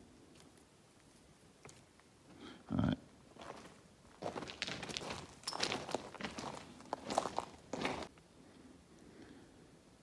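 Footsteps crunching on loose gravel railway ballast, a run of uneven steps from about three and a half seconds in until about eight seconds.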